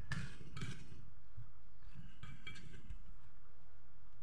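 Faint soft sounds of cut eggplant pieces being tossed by hand in a stainless steel bowl, mostly in the first second, over a steady low background hum.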